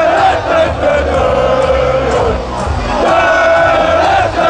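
A packed arena crowd shouting and chanting loudly together in long, held yells, with a music beat pulsing underneath.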